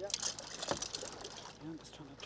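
Water splashing and sloshing around a bluefin tuna held at the boat's side, with crackling bursts over the first second. A short murmur of a voice comes near the end.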